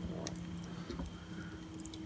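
Wood campfire crackling quietly in a metal fire pit, with scattered small sharp pops.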